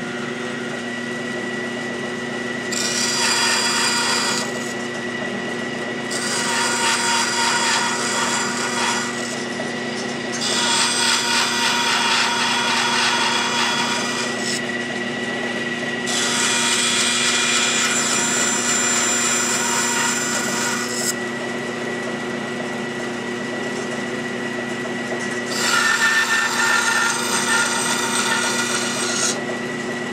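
Wood-cutting bandsaw running with a steady hum while a wooden board is fed into the blade for five straight relief cuts, each a few seconds of louder sawing through the wood. The relief cuts are made because the blade is too wide to follow such a tight curve on its own.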